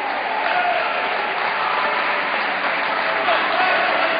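Crowd of futsal spectators in a sports hall, many voices shouting over one another, with clapping.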